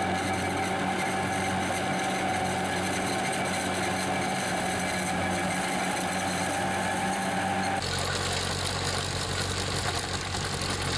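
A bush-fruit harvester's engine and drive running steadily, a hum with a steady higher whine over it. Near the end the sound cuts abruptly to a different steady engine drone, that of a grain binder working through standing wheat.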